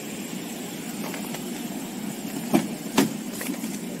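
A motor vehicle's engine idling steadily nearby, with two sharp clicks about half a second apart past the middle.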